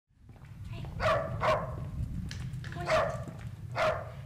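Small dog barking four times in short, sharp alert barks: a watchful house dog that barks when someone arrives. A low steady rumble runs underneath.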